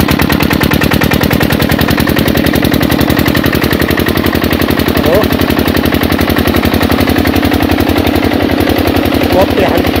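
Single-cylinder Petter-type diesel engine of an irrigation pump running steadily, with a rapid, even exhaust beat. It has just been crank-started and runs with its fuel system freshly bled of air.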